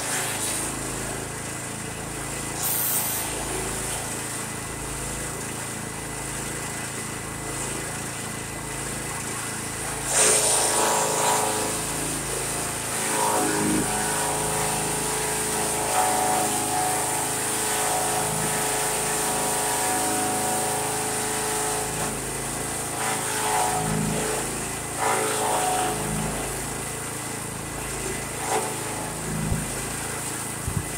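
Bearcat SC-3206 chipper shredder with an 18 hp Duramax gas engine, running steadily while branches are fed in and chipped. About ten seconds in, a louder stretch of chipping starts suddenly and carries a steady held tone. It lasts until about twenty-five seconds in, with a few sharp cracks along the way.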